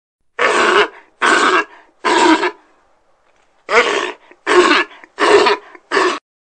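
Sea lions barking: seven loud barks in two runs, three then four, each about half a second long and under a second apart.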